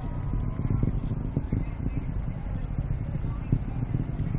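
Distant rocket launch rumble, a steady low sound with a crackle running through it, with faint crowd voices underneath.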